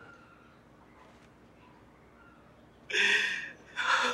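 Almost silent for about three seconds, then two short, loud, breathy gasps from a person, about a second apart, near the end.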